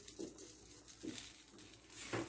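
Whole tomatoes being set down by hand on a black stovetop griddle, making two faint soft knocks, one near the start and one about a second in, over a low hiss.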